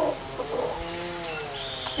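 A bird calling: one low, drawn-out call whose pitch dips and rises again.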